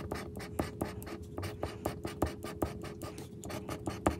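Scratch-off lottery ticket being scratched with the tip of a pink tool, rubbing the latex coating off the lucky numbers: a quick run of short, sharp scraping strokes, several a second.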